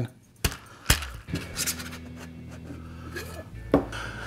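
Stainless steel cocktail shaker tins being opened: two sharp metallic knocks about half a second apart as the seal of the shaker is broken, then light handling and a clink near the end as the separated tins meet the bar.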